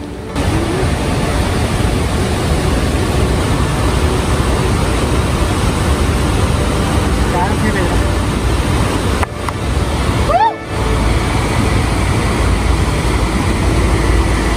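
Fast-flowing mountain river, the Beas, rushing loudly and steadily. The sound breaks off briefly twice about two-thirds of the way through.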